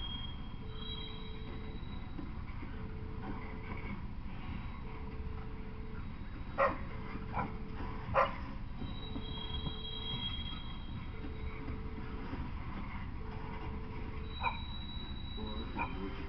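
Freight train of covered hopper cars rolling past with a steady low rumble, under a faint beep repeating about once a second. A dog barks three times about halfway through and once more near the end.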